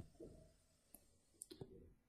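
Near silence with a few faint, short clicks from a stylus tapping on a drawing tablet as circles are drawn.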